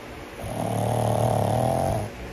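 A sleeping pug snoring: one long, loud snore that starts about half a second in and lasts to the end.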